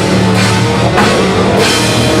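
Death metal band playing live: a drum kit heard close up, with cymbal crashes over low distorted guitars.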